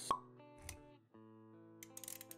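Motion-graphics sound effects over background music: a sharp pop just after the start, the loudest sound, then a soft low thump a little later. The music drops out briefly and comes back about a second in.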